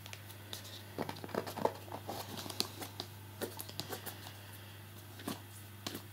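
Faint, scattered rustles and small clicks of a cardboard product box being handled and fingered, over a steady low hum.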